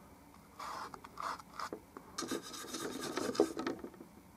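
Small paintbrush stroking and scrubbing paint onto stretched canvas: a few short scratchy strokes, then a closer run of strokes from about two seconds in.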